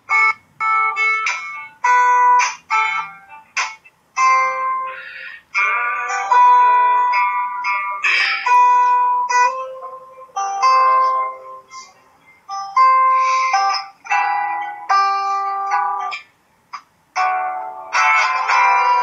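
Acoustic guitar with a capo playing picked chords as a song's introduction, each chord ringing briefly before the next, heard played back through a laptop's speakers.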